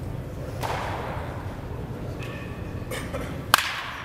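A baseball bat striking a pitched ball once, a sharp crack near the end with a brief ring after it, over a steady low background rumble.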